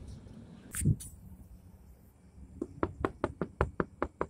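Fingertips tapping rapidly on a car's side window glass, about six quick taps a second, starting past the middle, after a single knock about a second in.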